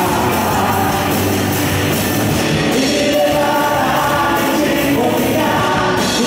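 Live worship band playing with several voices singing together, backed by electric and acoustic guitars, keyboard and a drum kit.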